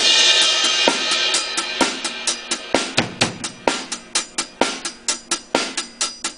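A drum kit being played: a cymbal crash rings out at the start and fades, while the drummer keeps up a steady, even run of sharp snare and drum strokes.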